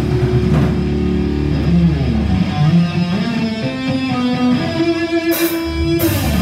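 Electric guitar played without drums: held low notes, a downward slide about two seconds in, then single notes stepping up to a held higher note. A crash near the end, with the full band coming back in.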